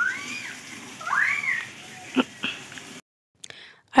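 Water from a garden hose spraying and splashing as a motorcycle is washed down, a steady hiss. Two short high calls that rise and fall sound over it near the start and about a second in, and two sharp clicks follow just after two seconds in.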